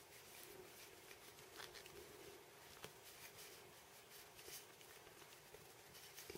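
Near silence with a few faint ticks and rubbing as fingers press a grommet into a drilled hole in a glass wine bottle. The grommet is stubborn to seat because the bottle's glass is thicker than it is made for.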